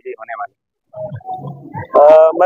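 Men's voices: a short end of speech, a brief break, then low muffled voices with a rough, grunting quality before the next speaker begins.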